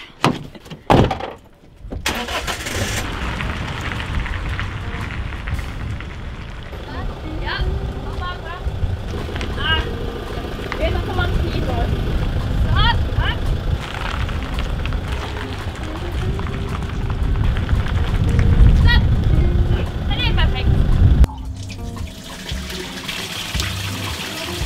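Background music over a camper van's engine running as the van is manoeuvred into position.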